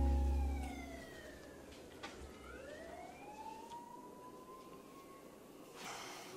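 A held music chord fades out over the first second. Then a faint distant siren wails, its pitch sliding down and then slowly rising again.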